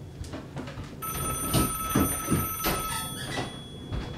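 A telephone ringing, louder with several held high tones through the middle.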